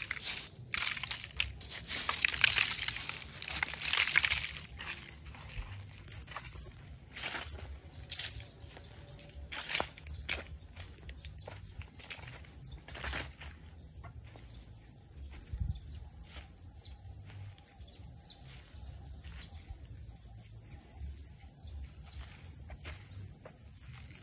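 Footsteps crunching on dry leaves and bare soil. They are dense and loud for the first few seconds, then thin out to scattered steps over a low steady outdoor background.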